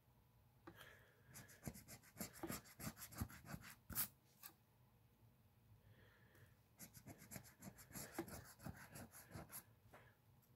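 A coin faintly scraping the coating off a scratch-off lottery ticket, in quick back-and-forth strokes. There are two runs of scratching, one starting about a second in and the other about six and a half seconds in, with a short pause between them.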